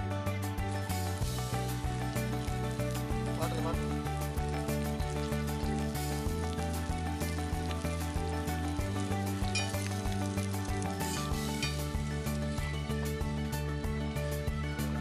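Background music with chords changing every two to three seconds, over the sizzle and crackle of crumb-coated fish pieces shallow-frying in oil on a tawa.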